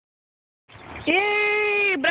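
A high voice calling out one long drawn-out sound at a steady pitch, starting about a second in and held for about a second.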